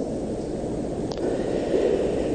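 Steady low rumble and hiss of an old recording's background noise, with one faint click about a second in.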